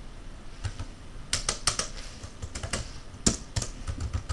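Typing on a computer keyboard: an irregular run of key clicks that starts about a second in.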